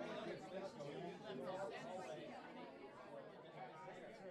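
Faint chatter of many people talking at once, no words clear, slowly fading out.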